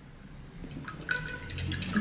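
A paintbrush rinsed in a jar of water: a quick run of light clicks and taps with small splashes in the second half, as the brush knocks against the jar.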